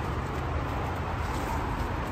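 Crop sprayer's engine running steadily, a low even drone with no change.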